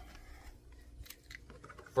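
Faint scattered clicks and scrapes of a hard plastic ATV front bumper cover being handled and lifted from the ground.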